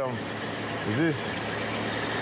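Car engine running in second gear, driving the rear axle and differential with the wheels spinning off the ground: a steady hum of the running drivetrain.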